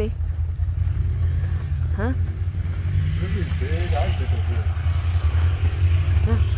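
Steady low rumble of a motorbike engine running, with no clear revving.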